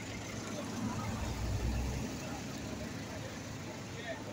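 Street traffic: a motor vehicle's engine running nearby, its low rumble swelling about a second in and easing off again, over steady outdoor background noise.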